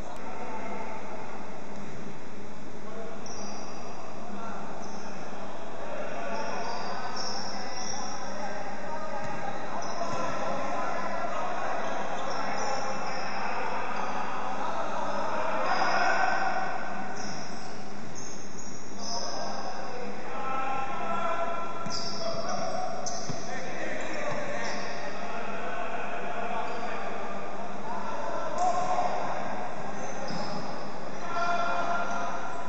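A basketball bouncing on a hardwood court during play, with players' and spectators' voices echoing in a large sports hall.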